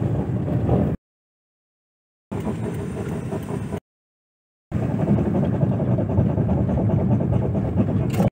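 Cabin driving noise of a Suzuki Every DA64V van, in three short stretches with two brief silent gaps between them. The last and loudest stretch is taken while braking at speed, the condition in which the van makes a noise that the owner traces to a dried-out, ungreased brake caliper pin.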